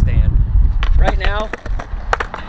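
A man speaking, over a low rumble that drops away about one and a half seconds in.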